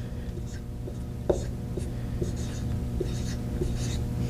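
Dry-erase marker scratching on a whiteboard in a series of short strokes as a word is written by hand, with a sharper tap about a second in, over a steady low hum.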